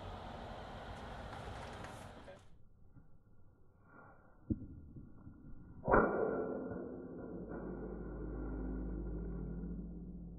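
A wooden practice sword strikes a metal jingasa used as a shield: a sharp knock about four and a half seconds in, then a much louder clang about six seconds in that leaves the hat ringing for several seconds. Before this comes a stretch of outdoor noise on the microphone.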